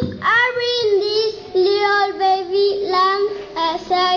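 A child singing a melody in held notes, phrase after phrase with short breaks between.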